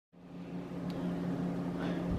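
Room tone with a steady low hum, fading in from silence just after the start; a faint tick about a second in.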